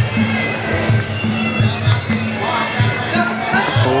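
Traditional Muay Thai fight music (sarama): a shrill reed pipe playing a melody over a steady drum beat of about two to three hits a second.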